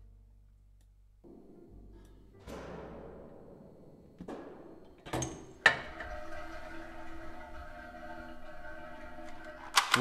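Playback of a raw boom-microphone location recording: a low hum, a swish, a few sharp knocks and thuds about four to five and a half seconds in, then a steady pitched drone with many tones. It is a plain single-microphone recording that sounds flat, without the depth of a dummy-head binaural recording.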